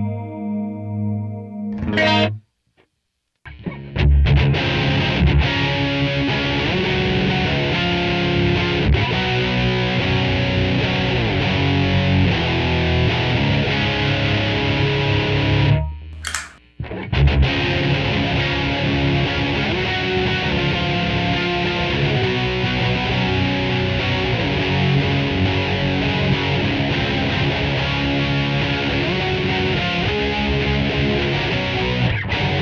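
Electric guitar, a Gibson Les Paul, played through a Neunaber Chroma Chorus, a micro-pitch-shifting chorus pedal, with amp emulation. A chord rings out and stops about two seconds in. After a pause of about a second, playing resumes and runs on, breaking off for about a second halfway through.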